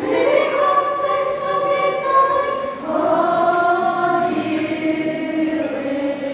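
A group of children's voices singing together as a choir, holding long notes and moving to a new note about three seconds in.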